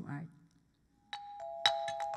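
A set of tuned metal percussion, struck with mallets, starts playing about a second in: sharp strikes with two ringing notes, a higher one and then a lower one, that hang on between the strikes.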